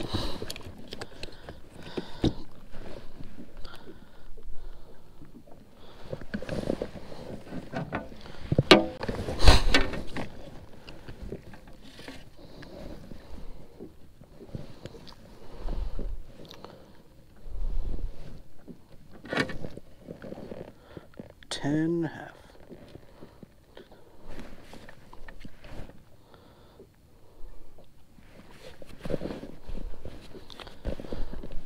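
Handling noises on a plastic fishing kayak: scattered knocks, bumps and rustles as a small bass is laid on a plastic measuring board, the loudest a pair of sharp knocks about nine seconds in. A brief voice near the twenty-two second mark.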